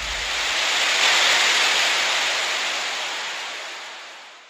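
Rushing, hissing whoosh sound effect of an animated logo outro, swelling over about the first second and then slowly fading away.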